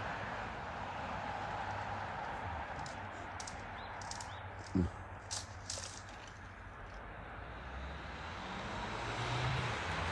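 Steady outdoor ambience dominated by the hum of distant road traffic, with a few faint clicks and one short faint pitched sound around the middle.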